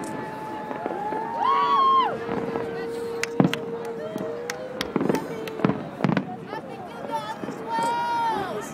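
Aerial fireworks shells bursting with several sharp distant bangs, the loudest about three and a half seconds in and others around five, six and nearly eight seconds. Under them a long steady tone holds for several seconds.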